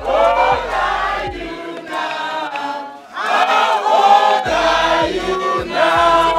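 A crowd of people singing together in celebration, many voices at once, with a brief drop about three seconds in before the singing swells again.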